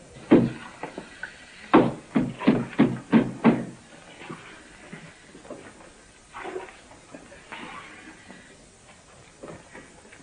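A single sharp knock, then about a second later a quick run of six knocks about a third of a second apart, like wood being struck. Fainter scattered sounds follow.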